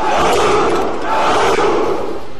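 A large crowd of men shouting a battle cry in unison, in long sustained shouts, with a slight break about a second in: the Spartan soldiers' answer to their leader.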